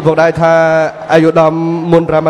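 A man's voice over a microphone and PA, announcing in a drawn-out, chant-like delivery with the pitch held nearly level.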